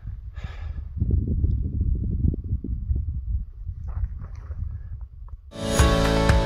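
Wind buffeting the camera microphone: an irregular low rumble. About five and a half seconds in, background music starts and is louder than the wind.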